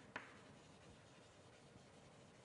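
Near silence: room tone, with one faint short tap just after the start, typical of writing on a board.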